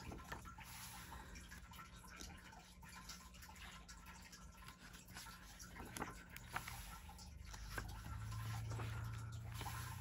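Faint paper handling as a colouring book's page is turned and the open pages are smoothed flat by hand: soft rustles and small scattered taps over a low steady hum.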